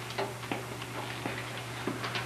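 A few faint, irregularly spaced light clicks and taps over a steady low electrical hum.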